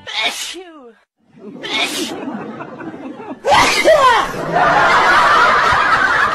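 A sneeze right at the start, then a second short sneeze-like burst about two seconds in, followed by a loud, noisy stretch of voice sounds from about three and a half seconds on.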